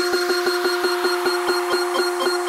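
Breakdown of an electronic dance track with no kick or bass: a short synth note repeats about six times a second at a steady pitch.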